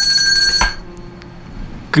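A high, steady bell-like ringing tone with several pitches sounding together, cutting off with a click about half a second in.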